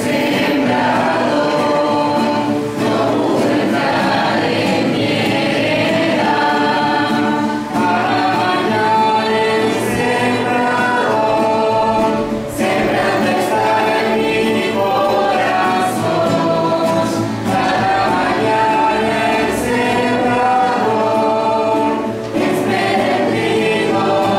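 A small group of singers singing a hymn together, in long held phrases with short breaks between them every few seconds.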